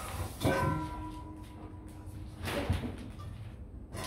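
A stainless steel dog bowl knocked on the tiled floor about half a second in, ringing for over a second, then a second, softer knock about two and a half seconds in.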